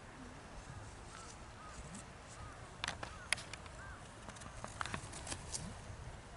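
Faint outdoor background with a few short, high chirps, and sharp clicks and taps in a cluster about three seconds in and again near the end.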